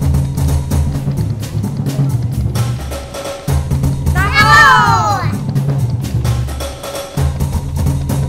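Parade drumming: rhythmic kettledrum beats over a deep bass, in phrases with short breaks. About halfway through, a single long voice call rises and then falls in pitch.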